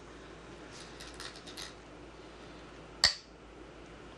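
A single sharp clack as a Go stone is set down on the commentary demonstration board, about three seconds in.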